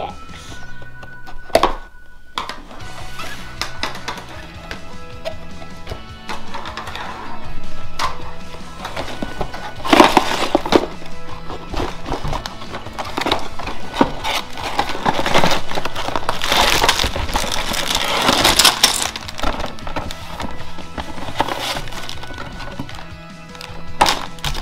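Background music runs throughout, over the handling of a Lego set's cardboard box being opened and its plastic bags of bricks being tipped out, rustling and rattling. The handling is loudest about ten seconds in and again from about fifteen to nineteen seconds in.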